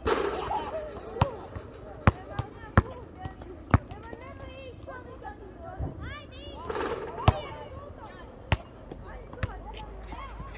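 A basketball bouncing on an outdoor court: sharp single thuds at irregular intervals, several seconds apart at most, with voices calling in the background.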